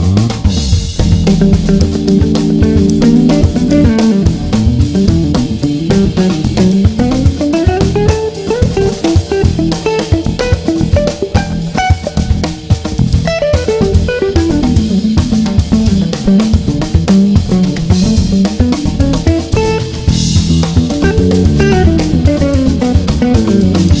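Electric guitar played through a restored 1960 EkoSuper amplifier, an AC30-type amp that Eko built for Vox, with bass guitar and a drum kit playing along. The guitar's single-note lines climb and fall over a steady beat.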